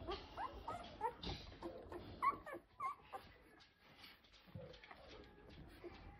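Ten-day-old golden retriever puppies squeaking and whimpering, a string of short high cries that slide up and down in pitch, mostly in the first three seconds, as they root toward their mother to nurse.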